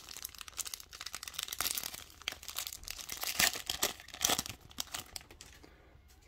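Silver foil trading-card pack wrapper being torn open and crinkled by hand: a dense run of sharp crackles, loudest past the middle, that thins out about five seconds in.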